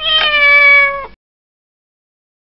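A single cat meow, about a second long, its pitch falling slightly before it cuts off abruptly.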